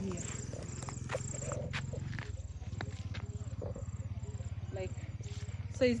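Insects chirping in a regular high-pitched pulse, about two chirps a second, over a steady low fluttering rumble, with a few light clicks in the first two seconds.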